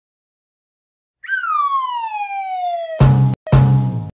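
A falling whistle-like tone that slides steadily down for almost two seconds, then loud, abrupt honking blasts on a steady low pitch, two of them in the last second.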